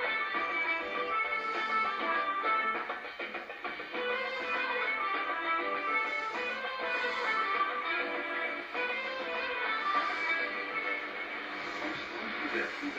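A music interlude in a shortwave AM radio broadcast, heard through a receiver's speaker on 15270 kHz in the 19 m band. It has the thin, band-limited sound of shortwave reception, with nothing above the middle treble.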